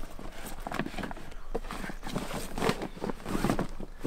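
Irregular rustling and light knocks as a compact bicycle pressure washer is pushed into a waterproof storage bag.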